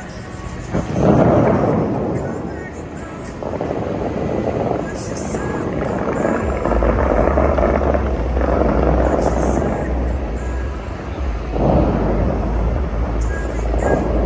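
Musical fountain show: water jets shooting up with a rushing spray noise, loudest about a second in and again near twelve seconds, over show music and crowd voices.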